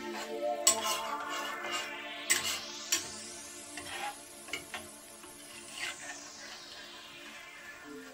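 Metal ladle stirring a thick peanut stew in a stainless steel pan, with a few sharp clinks and scrapes against the pan in the first three seconds and fainter ones after, over quiet background music.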